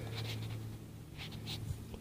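Faint, light scratching of a metal dental pick against the plastic plunger of a KeyTronic keyboard key as a new foam-and-foil capacitive pad is worked under the plunger's retaining teeth: a few short scrapes.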